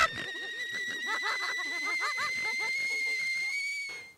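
Cartoon sound effect: echoing laughter fading away under a steady, high ringing tone that rises slightly in pitch and cuts off near the end.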